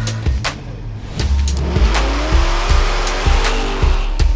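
Music with a steady drum beat, overlaid with a car sound effect: an engine revving with tyre squeal, its pitch rising from about a second and a half in.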